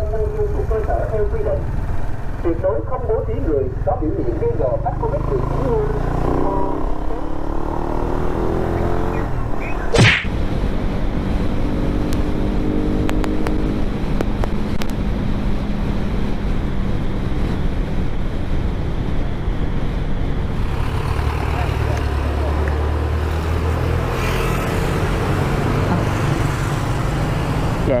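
Honda Winner X 150 single-cylinder motorcycle engine running under way with road and wind noise, its pitch rising as it accelerates about six to nine seconds in, then holding steady while cruising. A brief sharp high sound stands out about ten seconds in.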